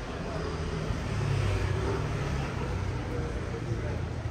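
City street ambience: a low traffic rumble that swells as a vehicle passes a little over a second in, with indistinct voices of passers-by.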